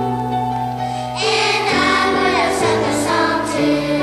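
Children's choir singing over a keyboard accompaniment of held chords. The voices come in about a second in and drop away near the end, leaving the accompaniment.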